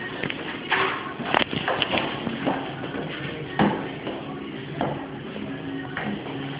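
Rustling and shuffling handling noise with a few sharp clicks and knocks, the sharpest about a second and a half in, over faint background music.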